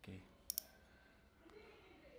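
Drag of a Shimano Stradic FL 1000HG spinning reel clicking as the spool is turned by hand: a quick double click about half a second in.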